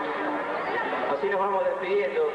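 Indistinct chatter: several voices talking at once, with no clear words.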